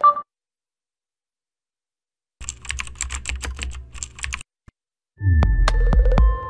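Animated logo outro sound effects: after a silent gap, a run of rapid electronic clicks, about seven a second, over a low hum for about two seconds. Near the end a loud deep boom with ringing tones starts the logo jingle.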